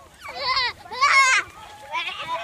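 A child imitating a horse's whinny: two high, quavering calls, the second one louder.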